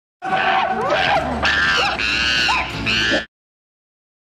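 Shrill, monkey-like screeching and squealing of a cartoon grasshopper's creature voice effect, swooping up and down in pitch, cutting off suddenly a little over three seconds in.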